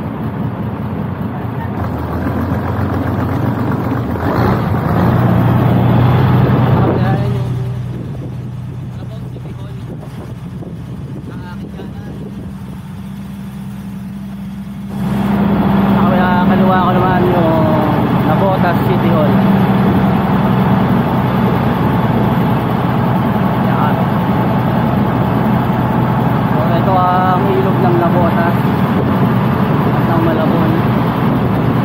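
Engine of a motorized bangka running steadily. It eases off about seven seconds in and picks up again sharply about halfway through.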